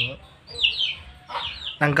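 Chickens calling in the background: a string of short, high chirps, each falling in pitch, several in quick succession.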